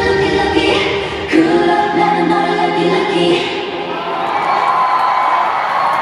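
Live K-pop girl-group song over a concert sound system, with singing; the drums and bass drop out about a second in, leaving the voices, with a crowd cheering.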